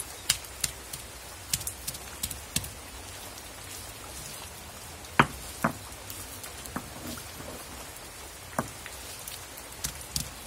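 Stone roller being rolled and knocked on a flat stone grinding slab, crushing green chillies and shallots: scattered, irregular knocks and clicks, the loudest about five seconds in, over a steady hiss.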